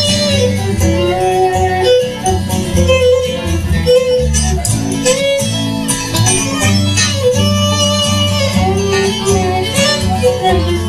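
A bluegrass band playing an instrumental passage with no singing: a bowed fiddle carries long, sliding melody notes over strummed acoustic guitar and plucked upright bass.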